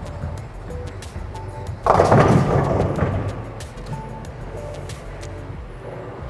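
Bowling ball rolling down a wooden lane with a low rumble, then crashing into the pins about two seconds in: a loud clatter of pins that dies away over about a second, a strike by the bowler's reaction. Faint background music plays throughout.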